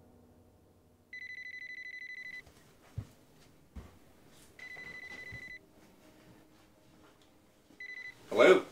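Cordless telephone ringing with a high electronic warbling tone: two rings of about a second each, then a third ring cut short near the end as the handset is answered. Two brief low thumps fall between the rings.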